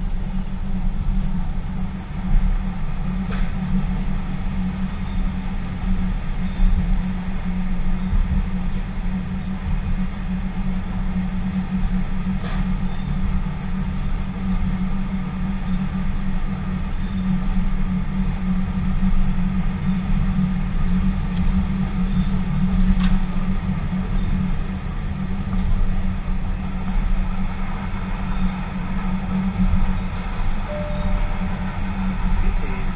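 Tyne & Wear Metrocar running, heard from the driver's cab: a steady low rumble with a few faint clicks as it enters and runs through a tunnel.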